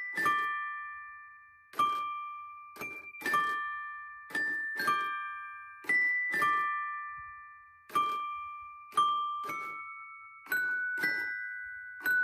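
Mr. Christmas Santa's Musical Toy Chest, a 1994 music box, playing a slow Christmas tune. Figurines strike its metal chime bars with mallets, about one or two notes a second, often two or three at once. Each note rings and dies away, with a soft mechanical knock as the mallet lands.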